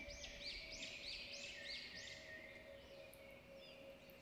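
Faint bird calls: a quick run of high, repeated rising-and-falling chirps, about three a second, fading out after two or three seconds, over a faint steady hum.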